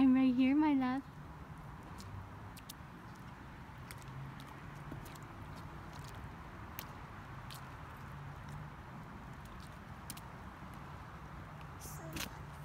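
A brief high-pitched voice in the first second, then a steady hiss of light rain and water on wet pavement, dotted with faint scattered drip ticks.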